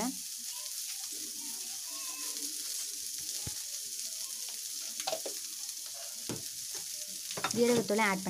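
Chopped onion, green chilli and turmeric sizzling steadily in oil in an aluminium kadai, with a few short clicks near the middle.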